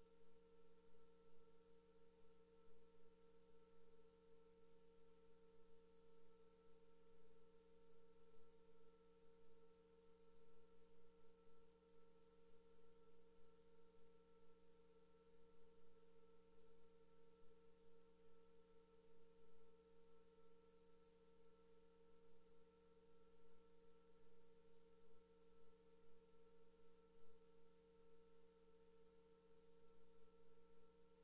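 Near silence with a faint, steady hum made of several fixed tones, unchanging throughout.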